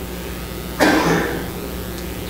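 A man coughs once, about a second in, over a steady low hum in the room.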